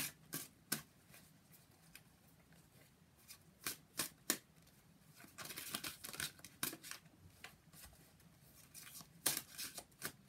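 A deck of tarot cards being shuffled by hand: scattered sharp snaps and slaps of the cards, a denser run of shuffling a little past the middle, and a few sharp slaps near the end.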